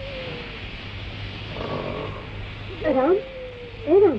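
Drawn-out, meow-like vocal sounds over a steady hiss. A long tone sinks slowly in pitch, then two short calls swoop up and down in pitch near the end.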